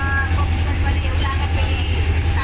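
Steady low rumble of a moving vehicle, heard from inside it, with faint voices in the background.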